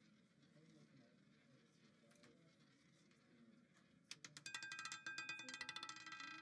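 Near silence for about four seconds, then a roulette ball clattering over the metal pocket frets of a spinning live-casino wheel: a rapid run of sharp clicks with a metallic ring, which begins to fade near the end as the ball settles.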